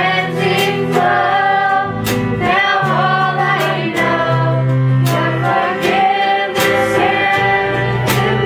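Live rock-style worship band: male and female voices singing together over strummed acoustic guitar, bass guitar and a drum kit, with drum and cymbal hits about once a second.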